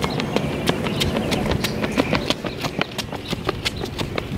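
Footsteps of two people running, sharp uneven steps several a second over a steady low background noise.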